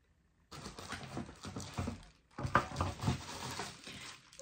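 Plastic wrapping and cardboard packaging rustling and crinkling, with small knocks, as a hot-air styler is lifted out of its box. It starts abruptly about half a second in.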